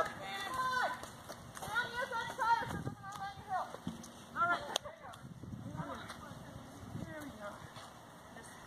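Several people's voices talking and calling, with no words clear, and a single sharp knock about four and a half seconds in; after that only faint background sound.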